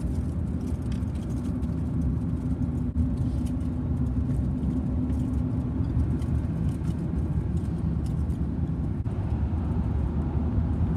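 A car driving, heard from inside the cabin: a steady low rumble of road and engine noise, with a faint steady hum through the first half.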